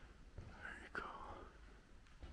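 Faint whispering voice, with a sharp click about a second in.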